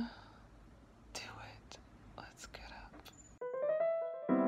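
Faint, close whispering and breathing with a few soft clicks and rustles. About three and a half seconds in, it cuts to electric piano music.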